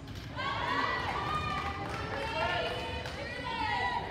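Raised voices calling out in a reverberant gymnasium during wheelchair basketball play, over a steady low rumble.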